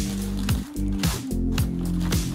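Background music with a steady beat: held bass notes and deep, falling kick-drum hits about twice a second under crisp percussion.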